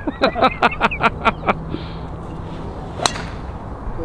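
A driver striking a golf ball off the tee: one sharp crack about three seconds in. Before it, a short burst of laughter.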